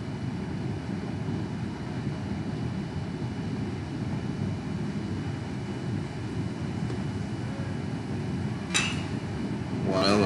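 Steady low rumble of ballpark ambience from the broadcast's crowd microphone, then a single sharp crack near the end as the batter fouls off a pitch with a bat.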